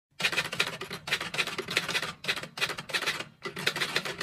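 Typing keystrokes: runs of rapid clicks broken by short pauses about every second.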